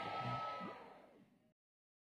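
Faint room sound with a few weak voice-like traces and a thin steady tone, dying away within the first second after loud shouting stops; the audio then cuts off into complete silence.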